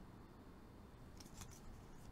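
Near silence, with a few faint ticks of a tarot card deck being handled, about a second in.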